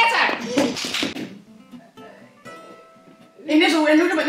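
Women's voices talking and calling out in the first second, then a quiet stretch with a few faint held musical notes, then loud excited voices again near the end.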